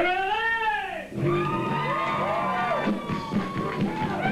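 A man's wild, wailing vocal howl that swoops up and then down in pitch for about a second, then a rock band starts up about a second in, with more yelping glides in the voice over the music.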